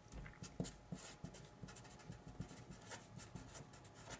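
Felt-tip permanent marker writing on paper: a faint, quick run of short strokes.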